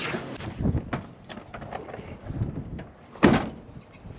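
A few light knocks and clatter, then one loud single thump a bit over three seconds in, a van door being shut.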